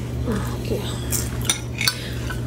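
Metal utensils clinking against serving dishes, two sharp clinks in the second half, over a steady low hum.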